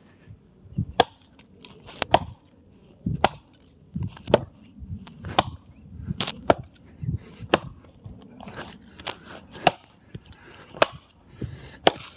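Hatchet chopping through a birch log, about one sharp knock a second as the blade bites in, about a dozen strokes in all. The strokes alternate angles to cut a notch through the log.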